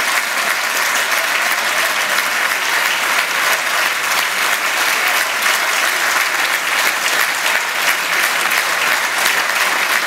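Audience in a hall applauding steadily, a dense clatter of many hands clapping.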